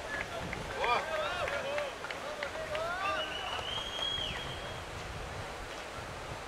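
Several voices shouting and calling across a rugby pitch, short overlapping shouts in the first half and one long, high held call about three seconds in, over a low steady rumble of wind on the microphone.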